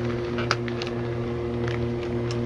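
A gloved hand picks an elm oyster mushroom cluster off its grow bag, with a short snap about half a second in and faint rustling, over a steady low machine hum.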